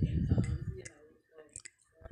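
A man's speaking voice trailing off in the first second, then a pause of near silence broken by a few short, faint clicks.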